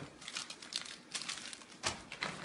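Thin plastic bags crinkling and rustling as a hand rummages through them, in quick crackly bursts, with a dull bump at the start and another near the end.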